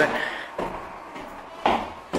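Footsteps climbing a stairwell's stairs, mostly quiet, with one sharper step or scuff near the end.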